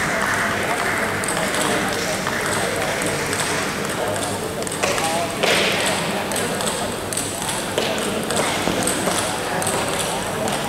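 Table tennis balls ticking repeatedly on tables and bats, many short clicks from about a second in, over the chatter of voices in a large hall.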